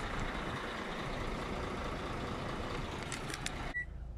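Steady outdoor rumble and hiss of vehicles and machinery at a filling station's gas (LPG) pump, with a few clicks near the end. It cuts off suddenly to the quiet of a car cabin, where a single short high electronic beep from the car sounds just before the end.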